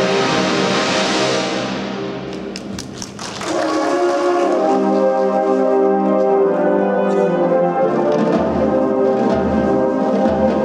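Marching band brass playing held chords: a loud chord fades away over the first three seconds, a few sharp percussion taps sound in the lull, then the brass swells back in with sustained chords. Low notes pulse underneath near the end.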